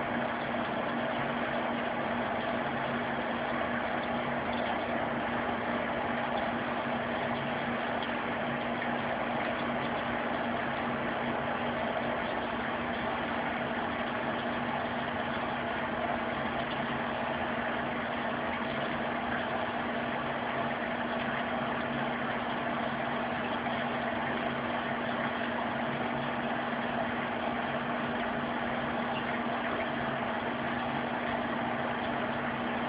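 A steady machine hum, one constant low tone over an even hiss, unchanging throughout.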